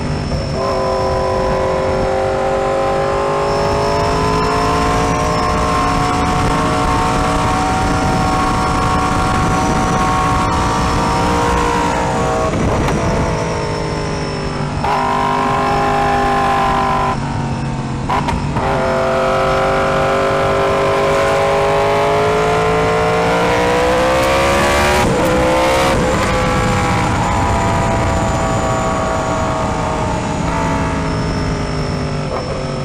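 2016 Yamaha R1's crossplane inline-four engine running under way through its custom one-off exhaust. The note rises and falls with the throttle, with short breaks at gear changes, a few in the middle and one after a rising pull near the end. Wind and road noise run under it.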